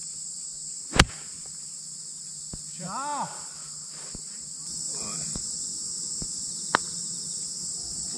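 A golf iron strikes the ball with one sharp, loud click about a second in, over a steady high chirring of insects. A second, lighter click comes near the end.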